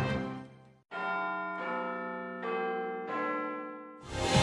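A short chime of four bell-like notes struck about three-quarters of a second apart, each ringing on under the next, after the preceding music fades out into a moment of silence.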